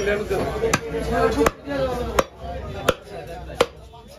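A heavy curved butcher's chopper striking a beef leg on a wooden chopping block: six sharp chops, evenly spaced about three every two seconds. Voices talk in the background for the first second and a half.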